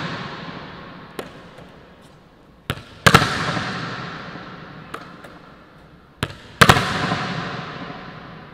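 A volleyball smacked hard downward with a one-handed wrist snap and slamming off the court floor, twice, about three and a half seconds apart; each hit rings out in a long echo through the hall. Lighter taps come between, as the rebounding ball is handled.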